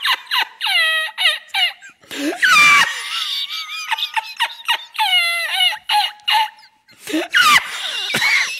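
A man's torrential, high-pitched squealing laughter in rapid bursts, each squeak falling in pitch, with a louder outburst about two and a half seconds in and a brief lull shortly before the end.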